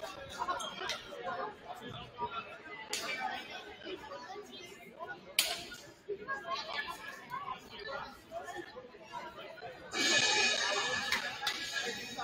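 Indistinct chatter of many voices echoing in a school gymnasium, with a single sharp click about halfway through. About ten seconds in, music starts playing and becomes the loudest sound.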